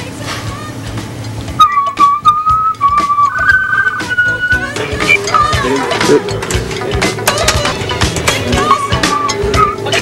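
A person whistling a short tune in a few held notes, starting about one and a half seconds in and ending on a higher held note; a shorter whistled phrase comes again near the end.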